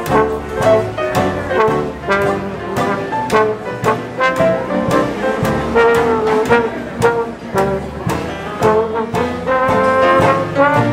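Traditional jazz band playing an up-tempo ensemble chorus, trombone, trumpet and clarinet lines over banjo, string bass and piano, with a steady beat about two a second.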